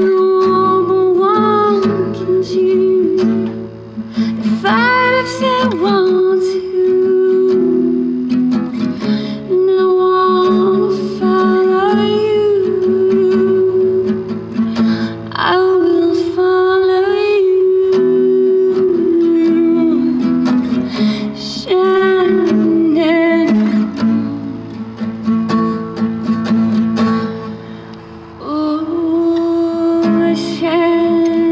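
Acoustic guitar playing a slow song, with a voice singing long held notes that bend in pitch over it.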